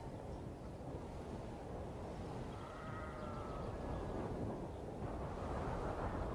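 Faint steady background ambience with one distant sheep bleat, a drawn-out call of about a second, some two and a half seconds in.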